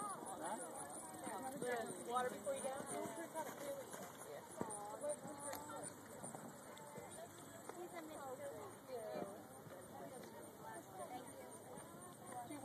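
Background chatter of several voices with a horse's hoofbeats on the sand arena footing as it canters the jumping course, passing close about six seconds in.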